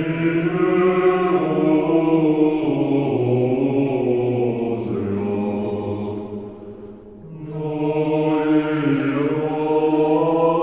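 Male choir singing Russian sacred choral music unaccompanied: sustained chords over a long-held low bass note. The phrase fades out about seven seconds in, and the voices come back in half a second later.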